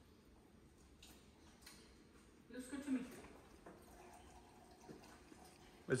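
Quiet room with a brief, faint voice about two and a half seconds in.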